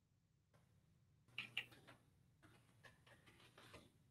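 Faint computer keyboard typing: two sharper keystroke clicks about a second and a half in, then a run of lighter key taps as a short command is typed.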